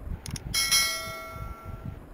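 A quick double click, then a bright bell ding that rings out and slowly fades. It is the sound effect of a subscribe-button animation, with the cursor clicking the notification bell.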